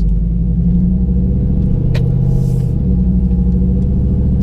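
Cammed 5.3-litre V8 of a Chevrolet Silverado with long-tube headers, heard from inside the cab while driving: a steady low drone. There is one sharp click about two seconds in, and the engine note shifts slightly shortly after.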